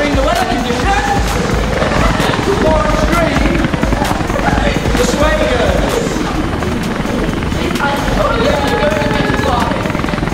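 Helicopter rotor sound with a steady low chopping, with voices over it.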